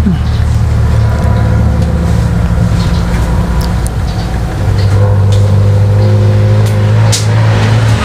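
Loud road traffic: a motor vehicle's engine running with a steady low drone that grows louder about halfway through, with a few sharp clicks.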